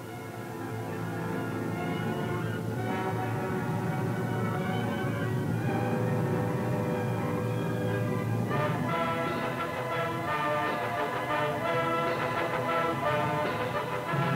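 Orchestral film music: held chords swelling in over the first couple of seconds, with the music growing busier from about eight seconds in.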